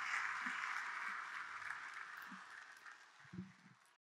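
Faint room noise fading away, with a few soft low knocks.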